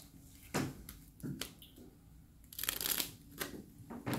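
Deck of playing cards being handled and shuffled by hand: a few sharp snaps of cards, then a brief crackly flurry of shuffling about two and a half seconds in.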